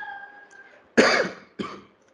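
A man coughing: one short, loud cough about a second in, followed by a smaller second cough.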